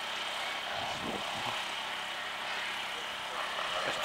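Distant enduro motorcycle engine running, heard faintly across open ground over a steady outdoor hiss.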